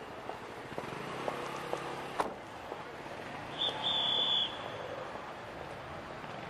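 Steady outdoor background noise with a faint low engine-like hum, a sharp click about two seconds in, and a short high-pitched tone lasting under a second around the middle.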